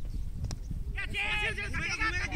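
A cricket bat strikes the ball with one sharp knock about half a second in, then players shout loudly and high-pitched from about a second in as the batters run. A low wind rumble on the microphone runs underneath.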